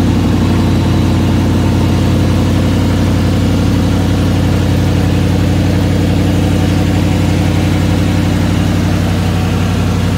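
1981 Chevrolet K10 4x4 pickup's engine idling steadily, heard from underneath the truck beside its exhaust pipes.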